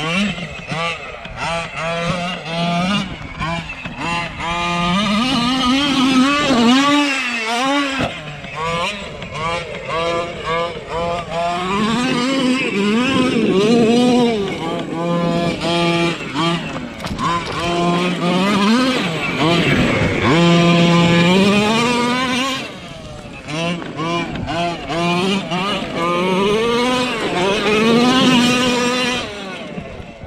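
Gas two-stroke engine of a Losi MTXL 1/5-scale RC monster truck revving up and down again and again as the truck is driven hard over rough ground, with a short lull a little past the middle.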